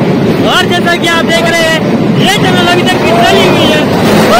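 Narrow-gauge toy train running through a long tunnel: a loud, steady rumble of the moving carriage. Passengers' voices shout over it with rising and falling pitch, from about half a second in and again after two seconds.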